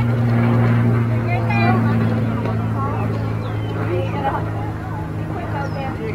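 Scattered distant voices over a steady low mechanical hum that weakens about four seconds in.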